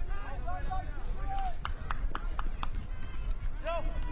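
People's voices calling out over a steady low outdoor rumble, with a quick run of about six sharp knocks around the middle.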